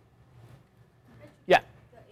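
Faint, distant speech from a student in the class asking a question, with one short, louder vocal sound about one and a half seconds in.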